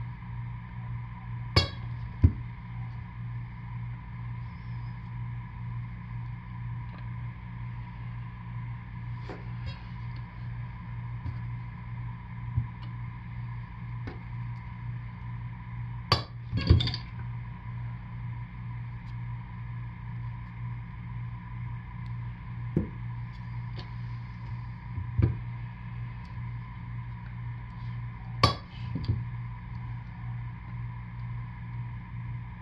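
Knocks and clicks from a wooden soap cutter as a soap loaf is pushed along its plastic tray and the cutting arm is brought down to slice bars, heard every few seconds over a steady low hum.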